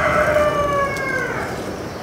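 A rooster crowing: one long call that slides slowly down in pitch and drops away about a second and a half in.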